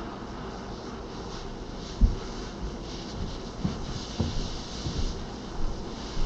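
Steady rushing of a large box fan, with a handheld torch's flame held into a deadbolt's keyway to soften the cured superglue inside. A few dull low knocks; the loudest comes about two seconds in.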